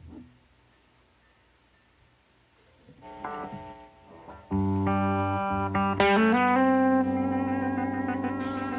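Electric guitar opening a song: after about three seconds of quiet, a few picked notes, then a loud chord at about four and a half seconds, struck again at about six seconds and left to ring.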